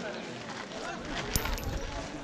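Visitors' voices talking in the open, no words clear, with a single sharp click about a second and a half in.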